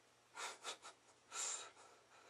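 A person breathing in short, sharp puffs, three quick ones and then a longer, louder intake about a second and a half in, like nervous gasps or sniffs.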